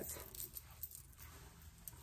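Faint, soft rustling with a few light ticks as hands handle and settle the long straight hair of a headband wig, over quiet room tone.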